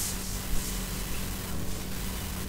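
Steady hiss with a low electrical hum from a webcam microphone, with a soft bump about half a second in.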